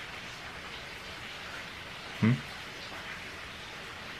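A steady, even background hiss, with a short questioning 'hmm?' from a voice a little over two seconds in.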